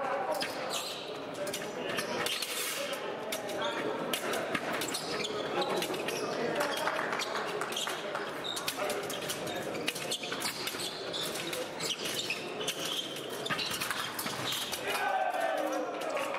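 Echoing sports hall with scattered voices, over frequent sharp taps and thuds from fencers' footwork on the piste.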